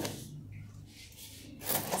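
Faint handling noise from a plastic plant pot rubbing on a stone tabletop, with a short scraping rustle near the end.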